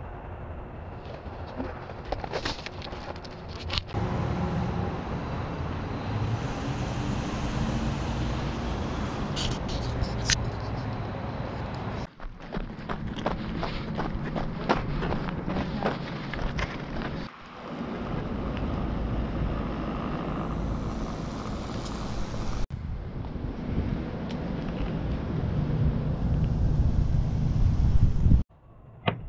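A steady low rumble of outdoor noise, with scattered clicks and rustles from a handheld camera being carried and handled. It drops out briefly three times.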